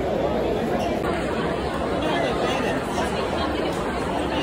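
Crowd chatter: many voices talking at once in a steady, unbroken babble.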